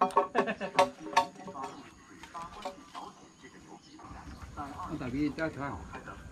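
People talking indistinctly, with a couple of sharp knocks about a second in.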